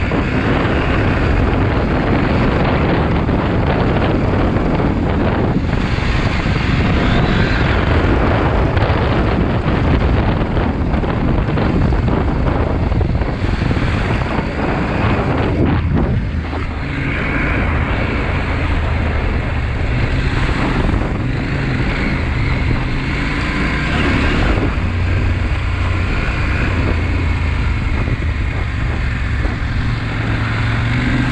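Husqvarna Norden 901's parallel-twin engine running steadily under way on a dirt track, with wind buffeting the microphone. The engine note dips briefly about halfway through, then settles again.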